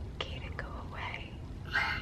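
Quiet whispering: a few short, breathy syllables over a low, steady hum.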